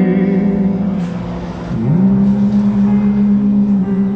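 Karaoke vocal and backing track played loudly through an Eltronic Dance Box 300 portable party speaker: a long held sung note, then a slide up about two seconds in into another long held note.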